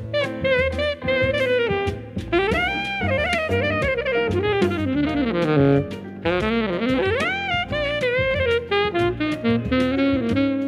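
Saxophone playing a jazzy melody with quick runs and a couple of swooping pitch bends, over a backing track with a steady drum beat and bass.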